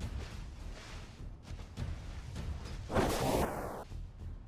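Whooshing, wind-like sound effect with a low rumble underneath, swelling into a louder whoosh about three seconds in.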